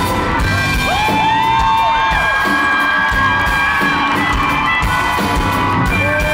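Live band music in a large hall, led by a harmonica playing long held notes that bend up into pitch, with crowd whoops and cheers mixed in.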